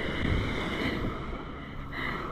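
Wind rumbling on the microphone over small waves washing onto a sandy shore, with a faint steady engine drone from a distant motorboat.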